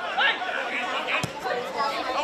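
Several voices calling and shouting across a football pitch during play, with a single sharp knock a little over a second in.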